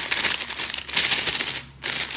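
Thin clear plastic shrink-wrap poly bag crinkling as a bar of soap is worked into it by hand. The crackling is irregular and fairly loud, with a brief pause near the end.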